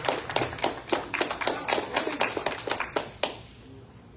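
A congregation clapping to welcome the pastors to the front, a quick run of claps that stops about three seconds in.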